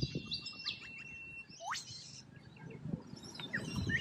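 Noisy miners calling: a held high whistle-like note, then a quick call sweeping steeply up in pitch, among scattered short chirps.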